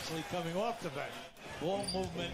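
Basketball game broadcast audio: a commentator talking over the play, quieter than a nearby voice, with the arena sound of the game underneath.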